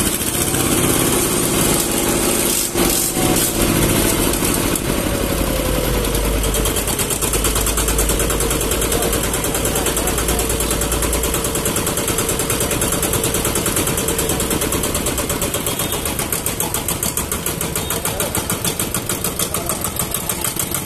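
Kubota ER-series single-cylinder diesel on a ZK6 walking tractor idling just after a hand-crank start, throttled back down. It runs with a steady, even firing beat that becomes more distinct in the second half.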